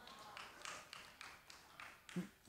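Near silence, with a faint, even series of light taps or ticks, about three a second.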